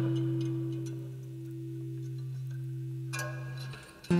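Acoustic guitar notes left ringing and slowly fading, with a few higher strings lightly picked about three seconds in before the sound briefly drops away.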